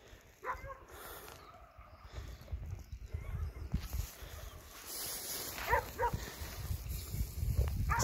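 A dog barking: one bark about half a second in, then two quick barks near six seconds, over a low rumble.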